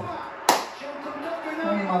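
A single sharp smack of a hand about half a second in, as in a clap or a slap, with men's voices around it.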